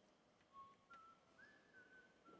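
A person whistling softly: a few faint, held notes that step up in pitch, starting about half a second in.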